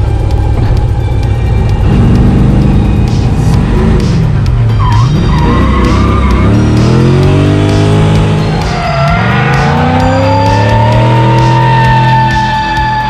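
Chevrolet Corvette LS2 V8 of a drift car revving hard, its pitch climbing and dropping again and again, with tyres squealing near the end, over background music.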